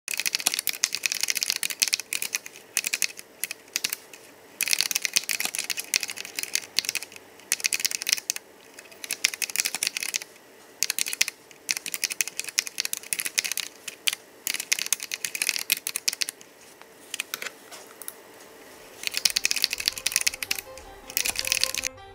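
Typing on a computer keyboard: rapid key clicks in bursts of a second or two, broken by short pauses.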